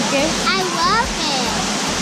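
Steady rush of water from a waterfall's cascades, with voices over it.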